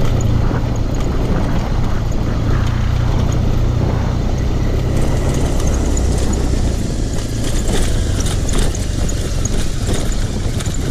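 BMW R1200GS's air/oil-cooled boxer twin running under way on a rough dirt track: a low, steady engine note that eases off about halfway through, mixed with wind and road noise. A few knocks come near the end.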